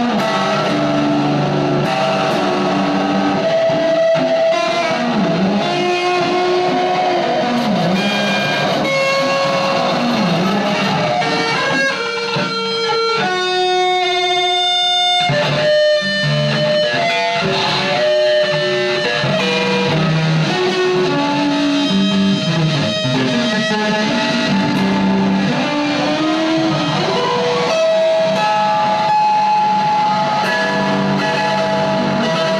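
Improvised noise music: an electric guitar run through a chain of effects pedals, making a dense, steady drone with sliding, wavering pitches. About halfway through it briefly thins to a single buzzing tone with many overtones before the thick layer returns.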